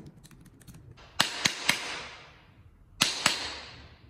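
Hammer blows: three quick, sharp strikes about a second in and two more near the end, each trailing off over about a second.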